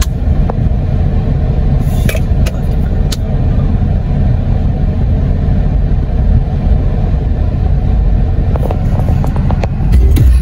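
Car engine idling, heard inside the cabin as a steady low rumble, with a few faint clicks.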